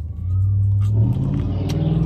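A man's low, drawn-out "mmm" hummed through a mouthful of bread, stepping up in pitch about a second in, over a steady low rumble inside a car.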